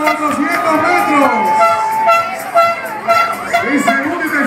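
A crowd of spectators shouting and cheering, many voices overlapping. A single held tone cuts through the voices about a second in.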